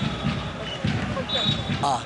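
Stadium crowd noise from a live football match broadcast, with repeated low thumps several times a second over the steady din of the stands. A commentator's short 'aah' comes near the end.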